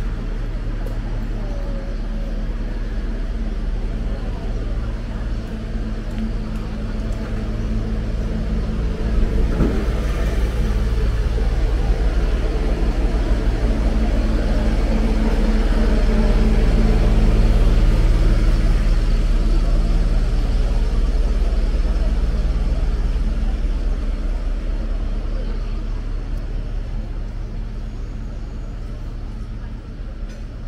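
Steady low hum of a parked delivery truck's motor running. It grows louder to a peak past the middle and fades over the last several seconds, over general street traffic noise.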